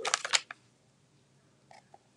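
A quick run of light plastic clicks and crackles in the first half second, as clear photopolymer stamps are peeled off their carrier sheet and handled. A couple of faint ticks follow near the end.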